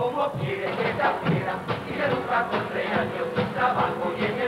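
A carnival murga performing live on stage: the group singing a song together, backed by a steady drum beat.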